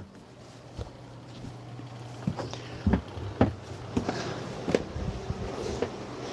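Irregular knocks, clicks and footsteps of someone moving about inside a sailboat's wooden cabin while handling the camera, over a low steady hum.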